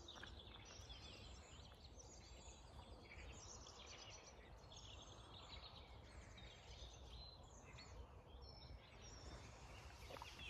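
Faint dawn chorus: many songbirds singing at once in overlapping chirps and trills, over a steady low rumble.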